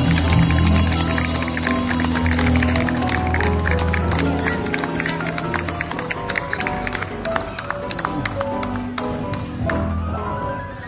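Music from a live band, with guitar and keyboard playing sustained notes over sharp percussive strokes.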